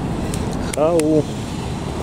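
A man's voice asks a single short "How?" about a second in, over a steady low rumble of outdoor city background noise.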